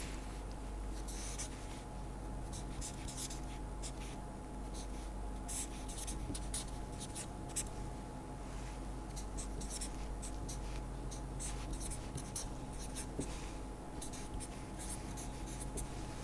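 Marker pen writing on paper: a run of short scratchy strokes, with pauses between them, over a faint steady electrical hum.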